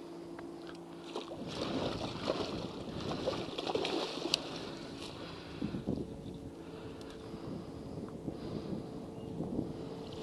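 Water splashing and churning as a hooked muskie thrashes at the surface beside the boat, loudest in the first half, with small sharp clicks among it. A steady electric hum, typical of a bow-mounted trolling motor, runs under it at the start and again in the second half.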